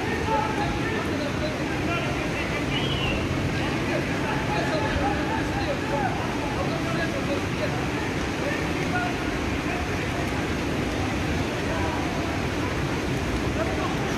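Steady rushing of floodwater from an overflowing creek pouring through the streets, with faint voices of people talking in the distance over it.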